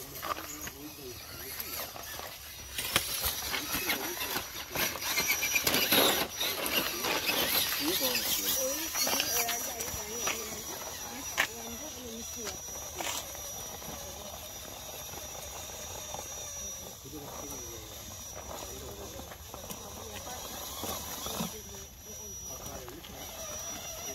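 Radio-controlled rock crawler's electric motor and gears whirring in spurts as it crawls over boulders, its tyres scraping and clicking on the stone, busiest in the first third; people talk faintly in the background.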